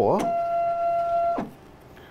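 A steady high-pitched whine, one held tone, that stops about a second and a half in, dropping sharply in pitch as it ends.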